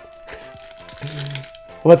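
Faint, scattered crinkling of a plastic booster-pack wrapper being handled and pulled open, over a steady held note of background music.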